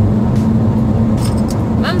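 Steady low drone of a car being driven, heard from inside the cabin.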